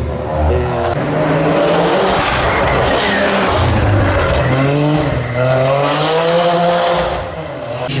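Rally car engine revving hard as the car accelerates past along the street, its pitch climbing and dropping several times through gear changes.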